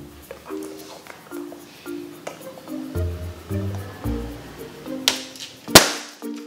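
Light plucked background music, then near the end a rubber balloon bursting with one sharp, very loud bang as the needle pierces it.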